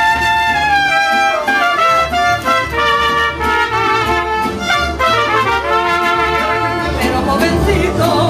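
Mariachi band playing an instrumental interlude: trumpets carry the melody in long held notes over the pulsing bass of a guitarrón and strummed guitars.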